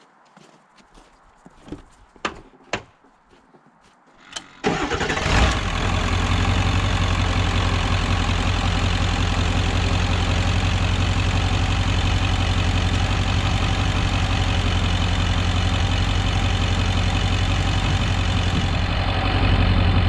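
A few light clicks, then about four and a half seconds in a Ford F-350 diesel engine cranks for about a second on its freshly fitted batteries, fires up, and settles into a steady idle.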